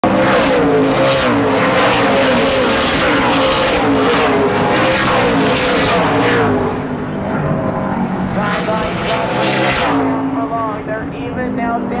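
A pack of super late model stock cars racing past at full speed, their V8 engines loud for the first six seconds or so as they pass close by, then fading; a second group passes about nine to ten seconds in.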